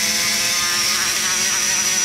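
Die grinder running at a steady speed with a sanding roll, smoothing the inside of an aluminium LS cylinder head's exhaust port, with a steady high whine over the motor's hum.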